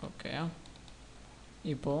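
A man's voice in two short phrases. Between them come a few faint, quick clicks from a computer.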